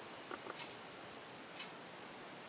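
A few faint, light clicks over quiet room tone.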